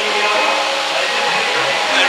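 Steady rushing background noise with a few faint steady tones running through it.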